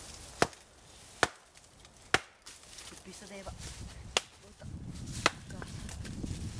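Hatchet chopping into a fallen branch: five sharp chops, most about a second apart, with a longer pause in the middle.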